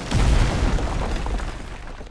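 Cartoon crash effect of a large wooden model ship collapsing into a pile of planks: a deep, loud boom just after the start that rumbles and dies away over the next second and a half.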